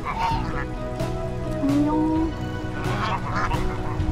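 A small flock of domestic geese honking, in harsh bursts right at the start and again about three seconds in. Background music plays steadily underneath.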